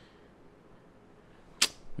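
A quiet pause broken by one short, sharp click about one and a half seconds in.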